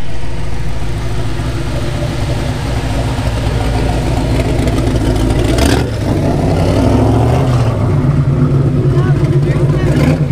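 A first-generation Chevrolet Camaro Z/28's V8 running through its dual exhaust as the car rolls slowly by. About six seconds in there is a short sharp noise, then the revs climb briefly before settling back to a low, even running note.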